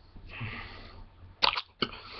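A man sneezing twice in quick succession: a breathy intake, then two sharp bursts about half a second apart.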